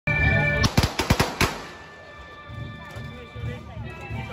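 A brief held chord cuts off, then five sharp firecracker bangs go off within about a second. Music with a steady low beat about twice a second and a wavering melody line follows.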